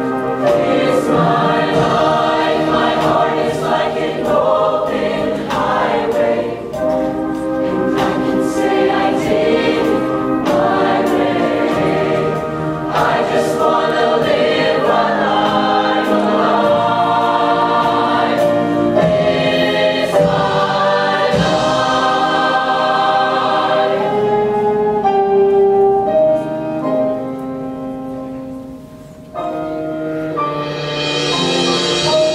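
Mixed-voice show choir singing sustained chords in harmony. The singing grows softer over the last few seconds, then a louder entry comes in right at the end.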